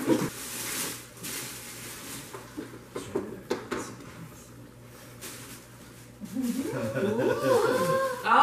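Tissue and wrapping paper rustling and crinkling as a present is unwrapped, then from about six seconds in a drawn-out, wavering vocal sound that rises and falls in pitch.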